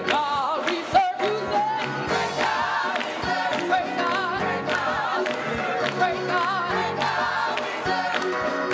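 Gospel choir singing over instrumental backing, with handclaps keeping a steady beat about two to three times a second.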